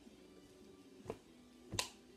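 Two short, sharp hand snaps about two-thirds of a second apart, the second louder, over faint background music.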